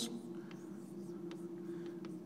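Chalk drawing on a blackboard: faint scratching and a few light taps as lines are drawn, over a steady low room hum.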